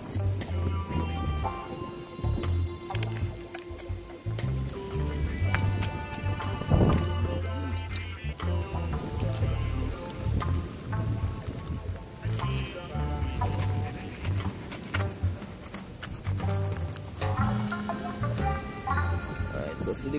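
Background music: a bass line under sustained melody notes.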